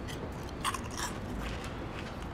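Crisps being bitten and chewed, with a few short crunches about two-thirds of a second and a second in.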